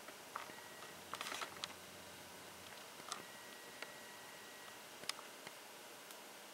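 Quiet room tone with a few faint, scattered clicks and ticks, the most of them clustered about a second in.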